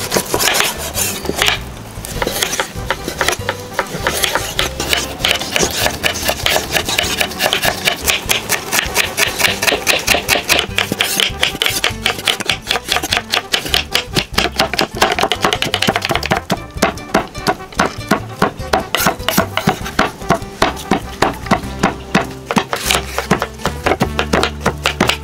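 A cleaver chopping raw pork on a wooden cutting board: rapid, repeated knocks several a second, with background music.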